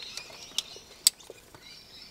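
Plastic wiring-harness connectors and loose wires clicking and ticking as they are handled and fitted together, with one sharper click about a second in.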